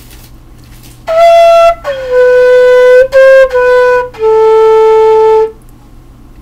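Homemade six-hole half-inch PVC transverse flute playing a short phrase of five clear notes starting about a second in. The first note is the highest, the phrase falls overall, and the last note is the lowest and held longest.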